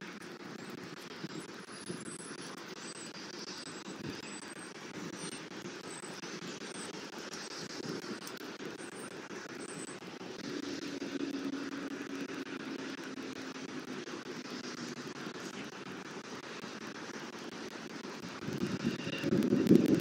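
Steady outdoor background hum of distant traffic, with faint high chirps in the first half. Near the end a louder low rumble of wind on the microphone comes in.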